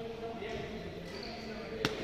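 A single sharp crack of a badminton racket striking a shuttlecock near the end, heard in a large hall over distant voices. Short high shoe squeaks on the court mat come about a second in.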